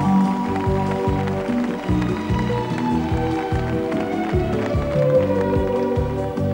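Instrumental passage of a Spanish pop song played by a band: long held keyboard chords over a steady beat of bass and drums, with no singing.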